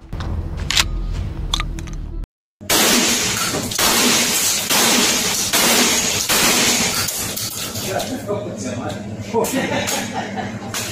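A low wind-like rumble with a few sharp clicks, then, after an abrupt cut, a rapid string of gunshots about two-thirds of a second apart, echoing heavily in an indoor shooting range.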